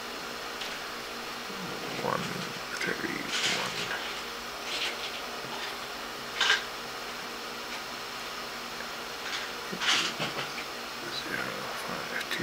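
Steady background hiss with faint mumbling and a few short breathy noises.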